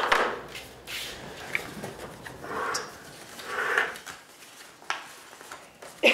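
Sheets of paper being handled and folded: several short rustles with a few light clicks and taps on the table.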